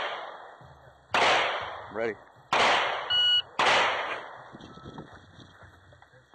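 Three gunshots, sharp cracks a little over a second apart, each trailing off in a ringing echo. A short electronic shot-timer beep sounds just before the third.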